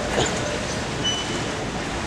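Steady background noise inside a large store, heard through a hand-held camera as it is carried along. A short, faint high beep comes about a second in.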